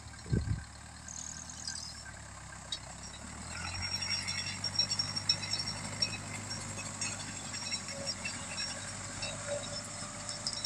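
Zetor 6340 tractor's diesel engine running steadily under load as it pulls a pneumatic four-row corn planter across the field, growing stronger about three and a half seconds in. A brief low thump at the very start.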